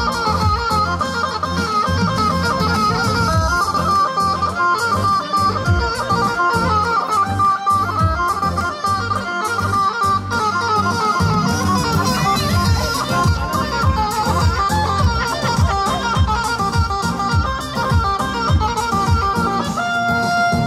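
Live wedding band playing an instrumental halay dance tune: an ornamented lead melody over a steady, driving drum beat, with no singing.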